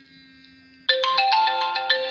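Phone ringtone: a faint steady tone, then about a second in a loud melody of changing electronic notes.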